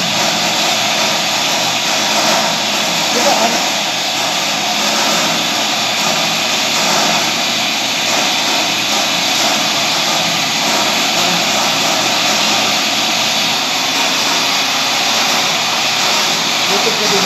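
Steady, loud running noise of metalworking lathe machinery in a workshop, with voices underneath.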